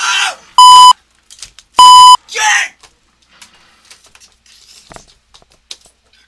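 Two loud, identical high beeps, each about a third of a second long, cutting in between bursts of shouting: censor bleeps laid over the yelling. After them only faint knocks and rustles.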